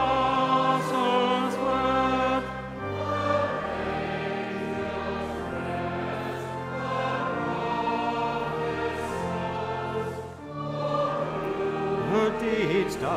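A choir singing in parts over steady, sustained low organ notes, louder for the first couple of seconds and then softer.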